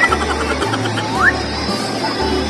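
Background music with a bass line that steps from note to note, and a short rising glide a little after one second.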